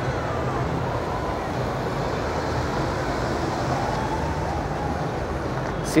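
Steady din of a large, crowded exhibition hall: a mix of crowd chatter, with the low steady running of a Jeep Gladiator crawling the obstacle course underneath.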